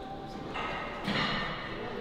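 Gym room noise with faint, indistinct background voices that rise twice, about half a second and about a second in.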